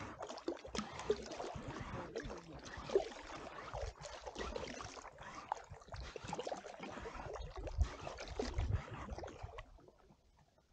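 Lake water splashing and lapping against a moving packraft's hull, with an uneven low rumble of wind on the microphone.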